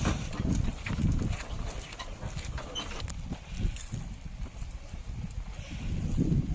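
Hoofbeats of a pair of draught bullocks plodding along a dirt track as they pull a cart, with irregular low thuds and short knocks from the cart.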